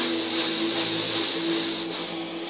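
Steady mechanical hum with a hiss over it, one low tone held throughout, heard as played back through a TV speaker.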